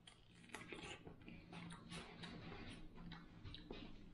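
Faint chewing of a whole kiwi fruit eaten with its furry skin on: a string of soft, irregular clicks.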